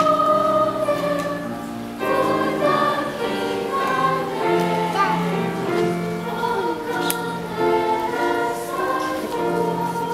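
A school choir of young voices singing in parts, holding long notes, with a new phrase starting about two seconds in.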